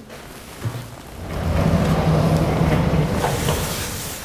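A sliding lecture-hall chalkboard panel being pushed along its runners: a steady rolling rumble that starts just over a second in, lasts about two seconds and then eases off.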